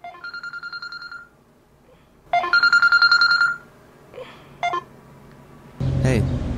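Telephone ringing: two trilling electronic rings, the second louder than the first, as a call goes through, followed by a short click near the end.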